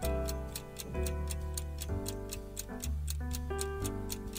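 Countdown clock ticking quickly and evenly, several ticks a second, over soft background music: it marks the last seconds of a quiz's time limit.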